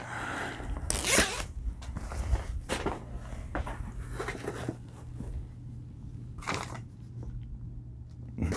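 Rustling of heavy hoodie fabric as the garment is lifted from its cardboard box and unfolded: a series of short brushing strokes, the loudest about a second in, with a low steady hum underneath.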